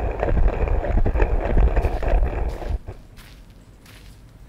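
Sound effect of a giant tree opening to let visitors in: a deep rumble with crackling over it, stopping about three seconds in. A faint low hum follows.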